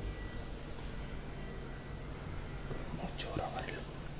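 Quiet room tone in a large empty building, with a brief faint whisper-like voice about three seconds in.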